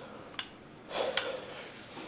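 Quiet handling of a rifle being laid down: two faint clicks, and a short breath just before the second click.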